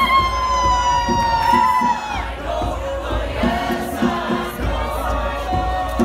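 Choir singing over a steady hand-drum beat: a high voice holds a long note with vibrato that slides slightly downward and ends about two seconds in, then the choir carries on in a lower register as the drum strokes continue.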